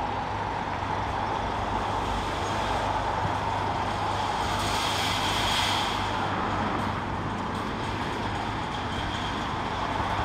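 A police van's engine running as it drives slowly into a car park, a steady low hum that swells slightly midway.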